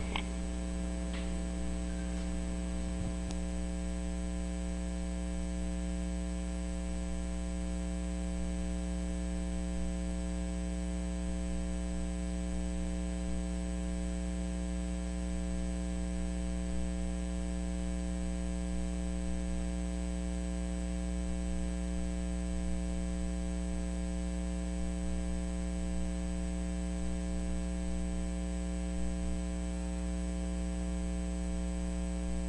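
Steady low electrical mains hum with a faint hiss, unchanging throughout.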